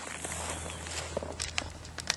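A low steady hum with a few light clicks or taps, the sharpest about a second and a half in.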